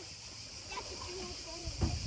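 A quiet lull: faint distant voices over a low wash of water, with a soft low thump just before the end.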